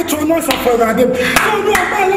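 A man preaching loudly in a local language, punctuated by a few sharp hand claps.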